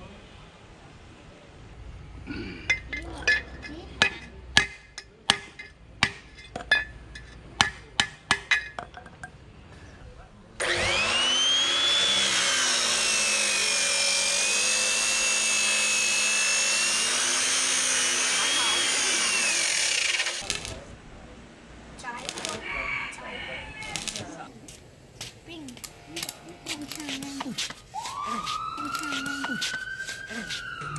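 Abrasive cut-off saw spinning up with a rising whine, then cutting steel pipe, its pitch sagging under the load before it climbs again and the motor shuts off after about ten seconds. Before the cut, a run of sharp knocks, one or two a second.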